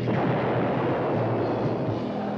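Film explosion sound effect: a blast that hits sharply at the start and rumbles on, slowly dying away, as a missile strikes a tank.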